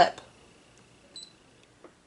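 Brother ScanNCut SDX225 cutting machine giving one short high beep about a second in as its touchscreen mirror button is tapped with a stylus, with a faint steady high whine under it and a small tap near the end.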